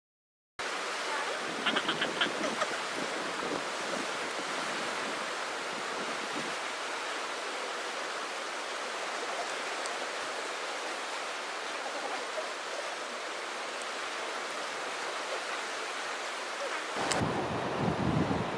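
Steady ocean surf mixed with wind on the microphone, with a few quick ticks about two seconds in.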